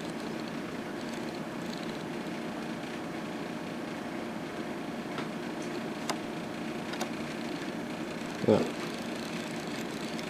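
A steady low hum, with a few faint ticks about halfway through.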